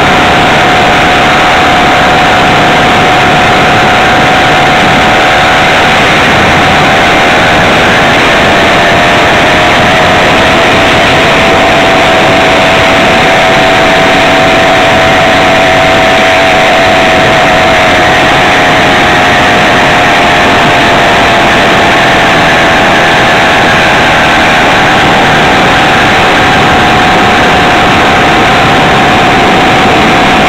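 Small two-stroke engine on a motorized bicycle running steadily under way at cruising speed, over a loud rush of noise. Its pitch sags a little about midway and picks back up later on.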